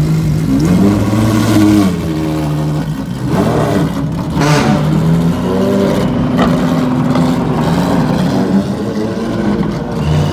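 Ferrari FXX's V12 engine running loudly, revving up and dropping back twice in the first few seconds, then holding a steadier pitch as the car pulls away.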